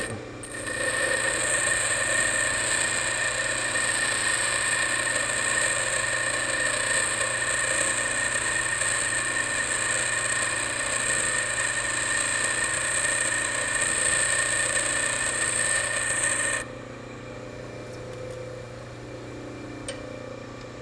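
Bench grinder wheel grinding a high-speed steel lathe tool bit: a steady grinding hiss with a high whine as the bit is held against the wheel to put clearance on it. About 16 seconds in the bit comes off the wheel and the grinding stops, leaving only the grinder motor running with a low hum.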